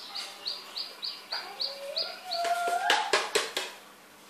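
A small bird chirping, a short high note repeated about three times a second, stopping a little over halfway through. A few sharp clicks follow near the end.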